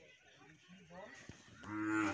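A cow lowing once: a single short, steady moo near the end, the loudest sound here.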